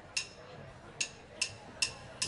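Drummer counting the band in by clicking two wooden drumsticks together: four sharp clicks, the last three at an even, quick tempo.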